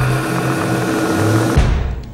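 TV news graphics stinger: a dense, steady whoosh over held low notes. It ends abruptly with a short hit about a second and a half in.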